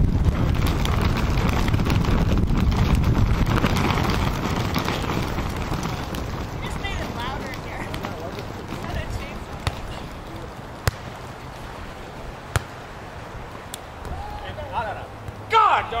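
Wind rumbling on the microphone for the first several seconds. Then four sharp slaps, a second or so apart, of a volleyball being struck by players' hands and forearms during a rally.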